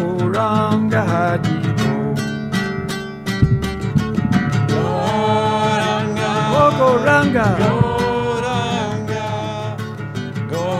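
A man singing a devotional kirtan chant with a gliding melody, accompanying himself on an acoustic guitar.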